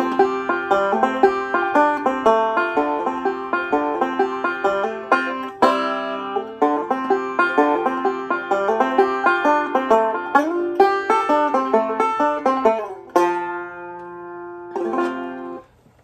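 Five-string resonator banjo (Recording King RK-R20), fingerpicked bluegrass-style in the key of F: a quick, steady run of rolled notes. About 13 s in it settles on a chord that rings and fades, followed by a short final phrase before it stops.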